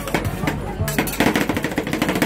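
Metal spatulas rapidly tapping and scraping on a frozen stainless-steel cold plate (about −35 °C) as rolled ice cream is chopped and spread, a quick irregular clatter of knocks and scrapes.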